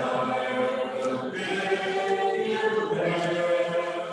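A congregation singing a hymn unaccompanied, in slow, long-held notes: the closing line of the chorus.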